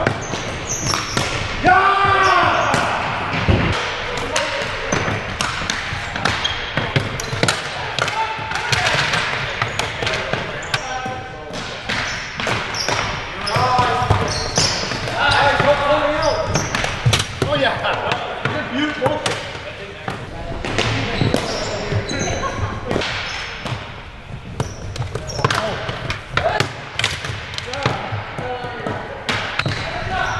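Ball hockey in a gymnasium: repeated sharp clacks of hockey sticks striking the ball and the hardwood floor, with players shouting, echoing in the large hall.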